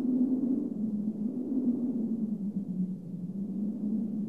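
A low, sustained droning tone that wavers slowly in pitch, with no beat: the ambient opening of a song's backing music.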